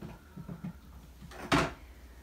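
Plastic parts of a Gravitti handheld vacuum knocking softly as the extension tube is worked onto the vacuum body, with one louder sharp click about one and a half seconds in. The motor is not running.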